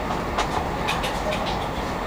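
Passenger train running, heard from inside the carriage: a steady low rumble and hiss, with several short sharp clicks of the wheels over the rails.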